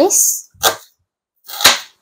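Kitchen knife chopping through red onion onto a cutting board: two sharp chops about a second apart, the second louder.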